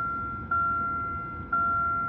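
A 2010 Chevy Malibu's door-ajar warning chime, one steady tone struck about once a second, each fading before the next.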